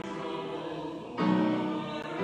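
A small choir singing a hymn, holding long notes, with the next notes coming in just over a second in.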